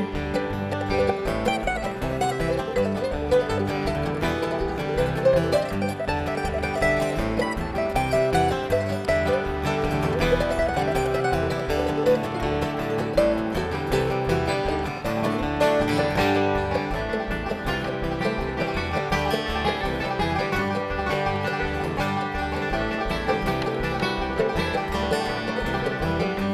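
Bluegrass string band playing an instrumental break: mandolin and acoustic guitar picking with banjo over a steady low bass pulse.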